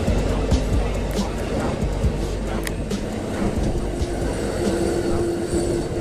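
Amtrak passenger coaches rolling past: a steady rumble with a click about every half second or so, with music playing over it.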